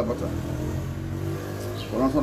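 A motor vehicle's engine running in the background, a steady low hum.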